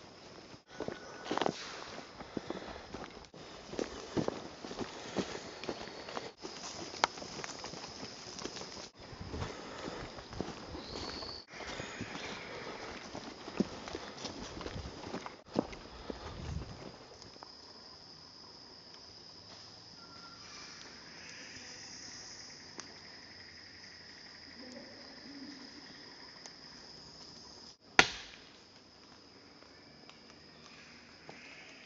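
Footsteps crunching irregularly through leaf litter and twigs on a forest floor, over a steady high insect drone. After about the middle the steps die away, leaving the insect drone, and a single sharp click comes near the end.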